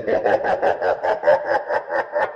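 A woman laughing loudly in a rapid, even string of short ha-ha pulses, about seven a second.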